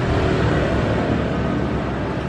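A steady low rumble of background noise, with no sharp snap or click standing out.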